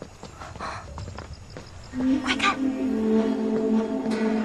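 Soundtrack music: a sustained low chord swells in about halfway through and holds steady. A short vocal sound, like a brief exclamation or gasp, comes just as it starts.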